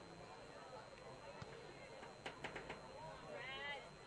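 Faint, distant voices of players and onlookers across a soccer field, with a few sharp knocks about two seconds in and one drawn-out shout near the end.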